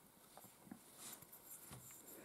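Near silence, with a few faint light ticks from a small aluminium capacitor can being handled in the fingers.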